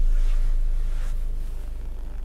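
Low, steady rumble of the car carrying the camera, gradually getting a little quieter.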